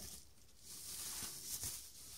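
Plastic bubble wrap rustling and crinkling as it is pulled off a solar torch light, loudest about one and a half seconds in.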